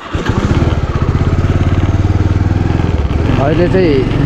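Motorcycle engine running steadily while riding, with fast, even firing pulses. A person's voice comes in briefly near the end.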